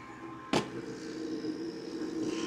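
Steady machine hum of a laser engraver's fume filter box and fans, with one sharp click about half a second in.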